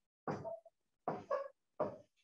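A man's voice saying a few short, quiet words.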